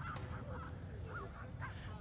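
A few faint, short calls from distant birds over low outdoor background noise.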